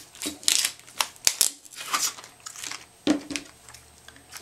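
Wide clear tape being pulled off its roll and pressed down onto a cardstock strip: irregular crinkling rustles with a few sharp clicks.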